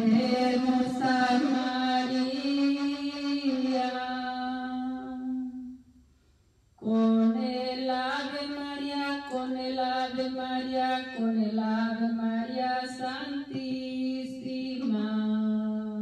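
A woman singing a Spanish praise hymn unaccompanied, in long held notes. Two phrases, with a short pause for breath about six seconds in.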